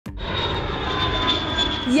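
Airplane engine running steadily: a constant rush with a thin high whine over it, with a voice beginning just as it ends.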